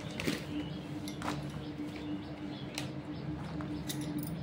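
A few faint, brief rustles and light clicks from vegetables being handled and moved about on a woven plastic bag, over a steady low hum.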